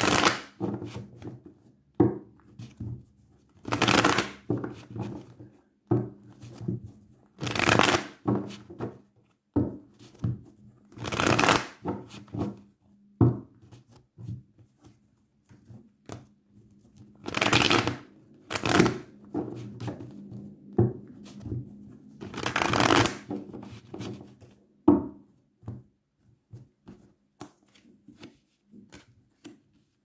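A deck of tarot cards being shuffled by hand: a series of short, loud rustling shuffles every few seconds, with small clicks and taps of the cards in between.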